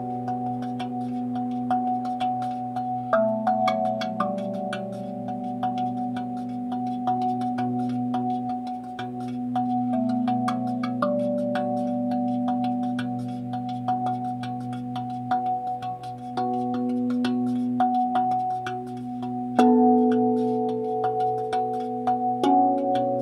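RAV drum, a steel tongue drum, played with the fingertips: quick light strikes keep several mellow notes ringing and overlapping, with new notes entering every few seconds and the loudest about twenty seconds in. A steady low hum sustains underneath.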